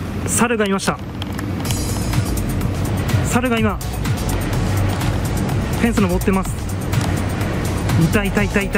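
A few short spoken exclamations from a person's voice, about every two and a half seconds, over steady background music and low noise.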